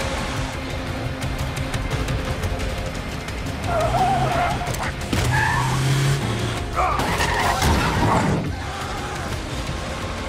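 Action-film sound mix: score music over a car engine running hard, with wavering squeals about four seconds in and again around seven to eight seconds in.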